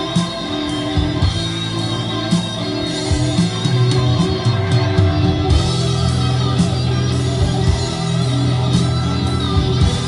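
Rock music with guitar and a steady bass line, played back through a pair of Sony SS-A5 La Voce loudspeakers driven by a Luxman L-58A amplifier and heard in the room.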